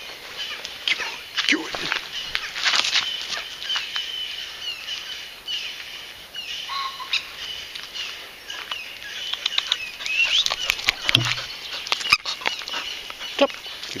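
Wild songbirds singing and chirping, many short overlapping calls and quick rising and falling notes throughout.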